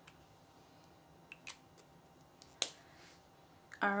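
A few small plastic clicks and taps as brush-pen markers are handled and put down, the sharpest click about two and a half seconds in, over quiet room tone.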